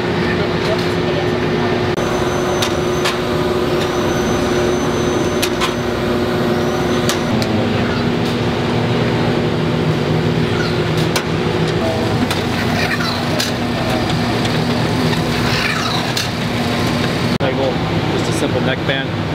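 Packaging-line machinery running with a steady hum of several low held tones, with scattered sharp clicks and knocks of jars on a slat-top conveyor.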